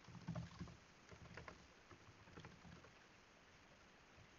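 Faint computer keyboard typing: irregular soft key clicks and thuds over the first three seconds, then a pause.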